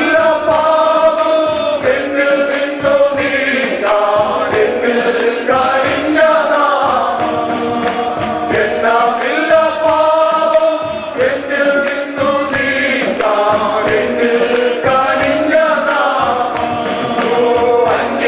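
A group of men singing a Malayalam worship song together over amplified microphones, with hand drums (congas and bongos) keeping a steady beat.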